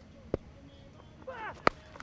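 A cricket bat striking a tape-wrapped tennis ball with one sharp crack near the end, as the ball is hit for six. A fainter click comes earlier, and a brief voice is heard just before the hit.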